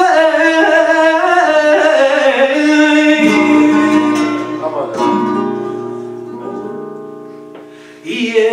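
Male flamenco singer ending a long, wavering sung phrase about three seconds in, then flamenco guitar answering alone with plucked notes and a strummed chord about five seconds in that rings and fades away.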